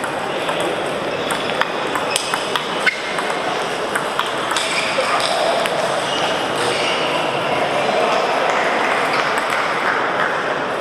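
Table tennis balls clicking off bats and tables in a rally, a quick run of sharp clicks in the first half, over the murmur of voices in a busy sports hall.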